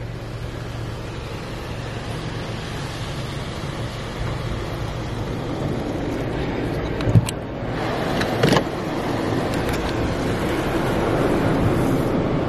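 Steady machine and air noise of an automatic car wash bay as heard from inside the car, growing louder toward the end as the exit dryer blowers come on. Two brief knocks a little past the middle.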